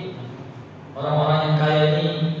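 After a short pause, a man's voice comes in about a second in and holds a drawn-out, steady, chant-like tone.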